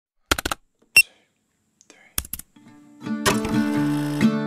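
A quick run of sharp clicks, a single bright ding about a second in, and another run of clicks, then strummed acoustic guitar music starts about three seconds in.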